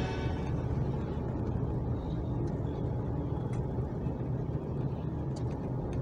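Steady low rumble of a car's engine and tyres on the road, heard inside the moving car, with a few faint clicks. The last of the radio music dies away right at the start.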